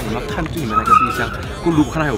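A man talking over background music, with a brief high squeal about a second in.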